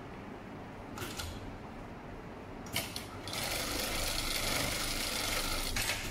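HighTex MLK500-2516N automatic pattern sewing machine sewing a box-X stitch through the crossing webbing straps of a cargo net. It runs steadily for about two and a half seconds in the second half, with a couple of sharp clicks just before it starts and another click as it stops.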